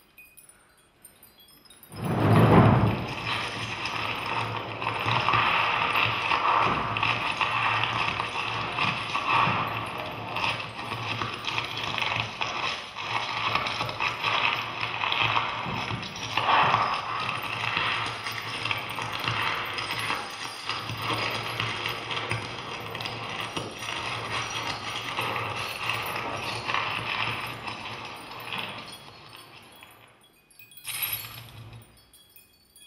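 A soundtrack of dense, continuous noise over a steady low hum. It starts with a loud hit about two seconds in and stops shortly before the end.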